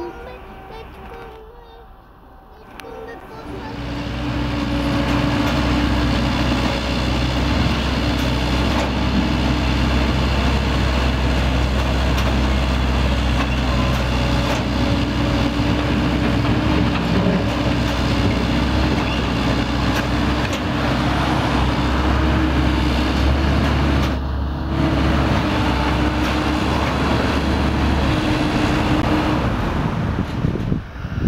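Heavy diesel engine of track construction machinery running steadily with a deep hum, coming in about three seconds in and stopping abruptly near the end.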